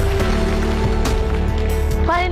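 Background music with a steady beat, about two beats a second, over held notes.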